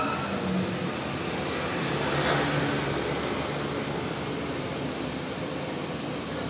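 Steady ambient din in a street-side noodle shop: a continuous rumbling noise like road traffic, with no distinct events.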